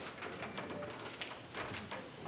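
Quiet room background with a few faint, scattered clicks and knocks, the kind of small shuffling and handling noises a room makes between speakers.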